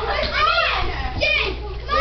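Children's high voices shouting and cheering, several overlapping, in a room.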